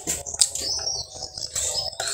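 A high-pitched chirp, like a small bird's, drawn out for under a second, over a few faint clicks of fingers working rice on a plate.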